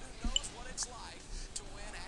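TV broadcast replay-transition effect: a single short thump about a quarter second in, with a brief high ping after it, over faint voices and race-broadcast background.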